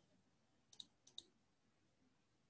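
Near silence broken by four faint, sharp computer mouse clicks in two quick pairs, about three-quarters of a second in and again just after a second in.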